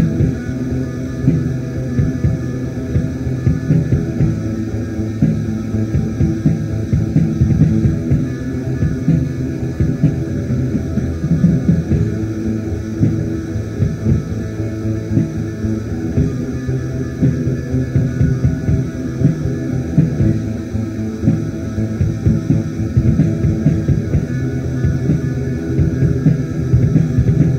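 Ambient raw black metal from a 1995 cassette demo: a dense, unbroken wall of band sound with no pauses, murky and bass-heavy, with little top end.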